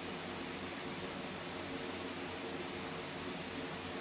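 Steady, even background hiss with a faint low hum: room tone, with nothing else happening.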